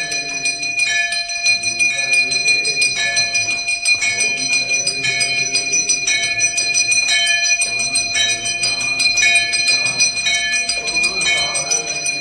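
Temple bell ringing rapidly and without pause during an aarti lamp offering, with voices singing underneath.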